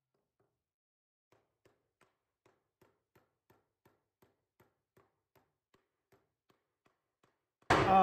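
A claw hammer tapping lightly and evenly on the wooden base of an old cabinet, about three taps a second, starting about a second in.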